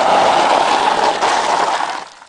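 Golf cart's tyres sliding and crunching over loose gravel as it drifts sideways through a turn: a steady rough noise that fades near the end.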